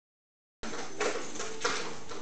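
Sound cuts in abruptly about half a second in: indoor room noise with a faint hum and a couple of light knocks.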